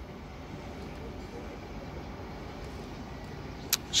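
Steady low rumbling outdoor background noise with no distinct events, and a short click near the end.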